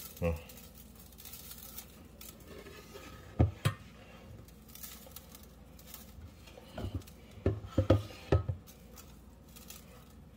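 Dry seasoning rub sprinkled over raw Cornish hen in a stainless steel pan: a faint scattered patter of grains on the meat and metal, with a couple of sharper knocks about three and a half seconds in and several short low knocks between about seven and eight and a half seconds.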